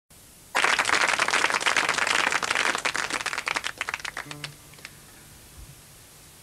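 Audience applause breaking out loud about half a second in, then thinning to a few scattered claps and dying away by about four and a half seconds in.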